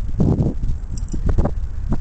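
Handling noise from broken piston pieces and a wrist pin being turned in the hand: a short rustle just after the start, then a few sharp clicks and taps, over a low rumble.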